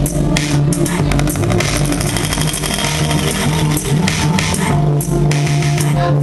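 Electronic music played live: a sustained deep bass line under sharp, crisp drum hits, loud and continuous.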